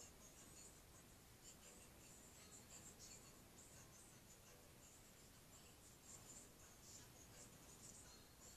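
Near silence with faint, irregular light rubbing: gloved fingers smoothing a thin coat of epoxy over a tumbler turning on a cup turner.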